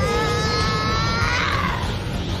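A dubbed anime character's long, held battle scream, its pitch climbing slightly before bending near the end: Gohan's Super Saiyan 2 scream against Cell in the Italian dub of Dragon Ball Z.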